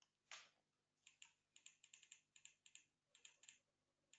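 Faint clicking of a computer keyboard, a quick irregular run of keystrokes, with one longer scuffing noise just before them.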